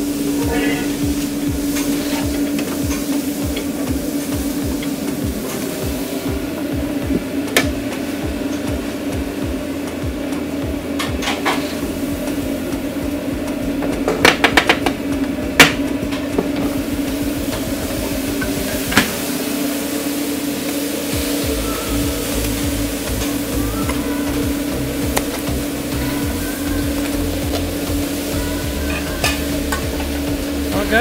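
Food frying on a food truck cooktop, with sizzling and scattered clanks of metal utensils over a steady machine hum. A quick run of clanks comes about fourteen to sixteen seconds in.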